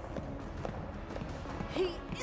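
Quiet, low background score from an animated TV episode during a pause in the dialogue, with a voice starting a line near the end.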